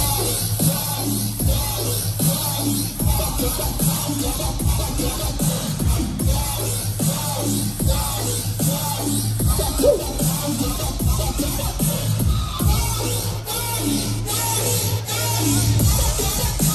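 Live dubstep DJ set played loud over a club sound system and heard through a phone's microphone in the crowd: a sustained deep bass line under dense, rapid drum hits.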